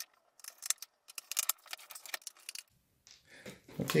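Scattered quick metallic clicks and ticks of a screwdriver driving screws back into a laptop's plastic bottom cover, sped up in fast-forwarded footage. The clicks stop about three seconds in.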